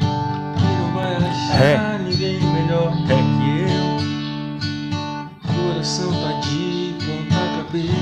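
Steel-string acoustic guitar strummed slowly in a simple pop-rock rhythm, chords ringing between regular strokes, with a short break in the strumming about five seconds in.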